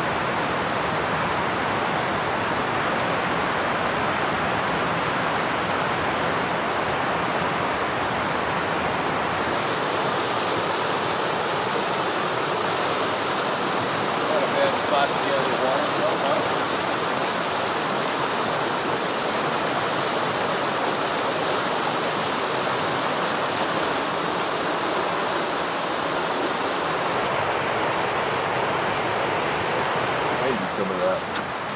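Mountain stream rushing and cascading over rocks: a steady rush of water, slightly brighter from about a third of the way in.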